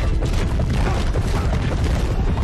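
Film fight sound effects: a dense low rumble with repeated heavy booming impacts, mixed over background music.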